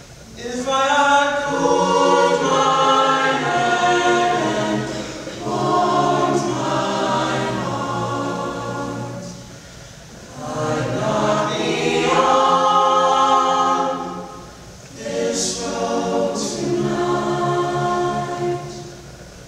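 Mixed-voice school choir singing a slow song, unaccompanied, in four phrases with short breaths between them.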